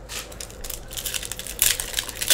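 Foil wrapper of a 2016 Donruss soccer trading-card pack crinkling and crackling as it is handled and torn open, the crackles coming thicker and louder from about a second and a half in.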